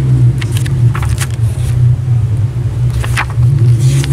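A loud, steady low mechanical rumble, with a few brief papery rustles as the pages of a spiral-bound sketchbook are turned.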